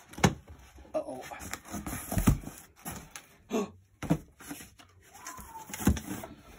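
Cardboard box flaps being pulled open and the contents handled: irregular knocks and rustles of cardboard, the loudest just after the start and about two seconds in.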